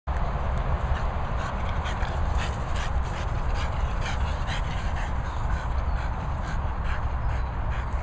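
Two French bulldogs playing tug with a rope toy: many short, sharp breathy and scuffling sounds from the dogs over a steady low rumble.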